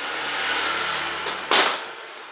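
A steady rushing noise, then about one and a half seconds in a single loud, sharp crack as the seized top cap of an RST 100 mm bicycle suspension fork breaks free under a wrench.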